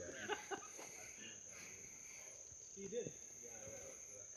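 Quiet woodland with a steady, high-pitched insect drone. Faint distant voices come in near the start and again about three seconds in.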